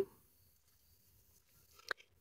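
Near silence, broken by one brief faint sound near the end.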